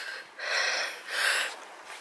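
A woman's breathing close to the microphone: a few quick, audible breaths in a row, dying away about halfway through.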